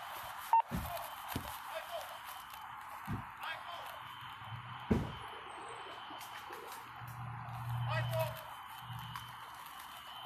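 Steady hiss from a body-worn camera microphone, with a few sharp knocks of gear and handling as the wearer moves into cover. A low hum rises briefly about seven seconds in.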